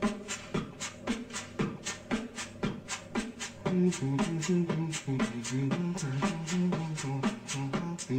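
Vocal beatboxing: a fast beat of mouth-made kick, snare and hi-hat sounds. A little past halfway, a hummed bass line stepping between low notes joins the beat.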